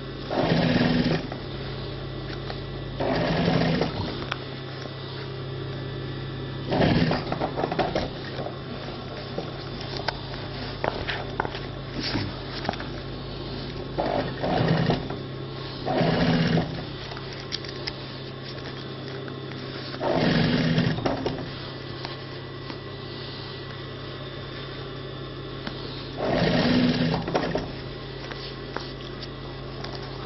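Industrial sewing machine stitching through layered denim in about seven short runs of a second or so, sewing bit by bit. Its motor hums steadily between the runs.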